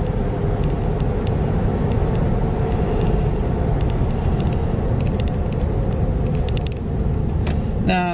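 Steady low rumble of a car's road and engine noise heard inside the cabin while driving.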